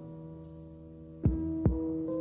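Electronic synth-pop music: sustained synthesizer tones, with two deep electronic drum hits that drop in pitch in the second half.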